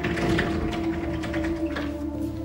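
Door lock and latch mechanism clicking and rattling in a quick run of short metallic clicks, over steady background music.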